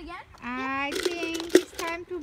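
A child's voice making drawn-out wordless vocal sounds, one sliding up and then held level, with a couple of sharp clicks about a second and a second and a half in.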